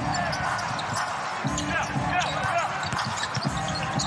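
Live basketball on a hardwood court: sneakers squeaking repeatedly and the ball bouncing, over arena crowd noise and background music.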